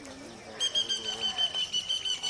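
A bird calling in a high, rapidly pulsed trill held on one pitch, starting about half a second in, over faint voices.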